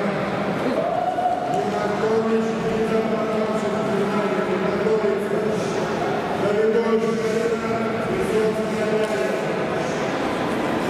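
A man's voice over a public-address system in a large echoing hall, drawing out long held syllables.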